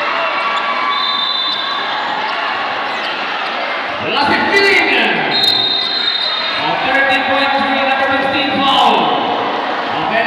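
A basketball bouncing on the court amid the steady din of a packed gym crowd's voices. The crowd noise swells about four seconds in.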